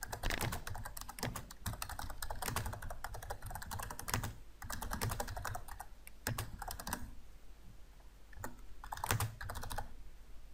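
Computer keyboard typing: a steady run of keystrokes for most of the stretch, then a pause and a few more keys near the end.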